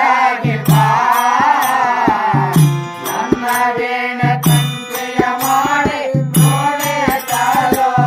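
Kannada devotional bhajan: a singing voice over harmonium, with tabla strokes and the clink of small hand cymbals keeping time.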